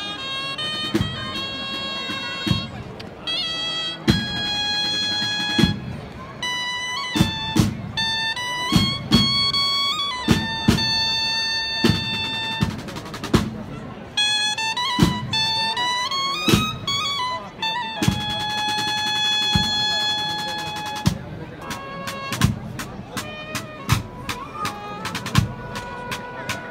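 Procession band of brass and drums playing a slow processional march: long held brass notes moving up and down in a melody, with single drum strokes between them that come faster near the end.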